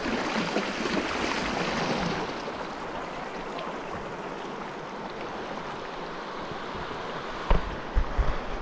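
Fast river current rushing around a kayak as it drifts through a riffle, a steady wash of water that eases slightly after about two seconds. A single sharp knock comes near the end.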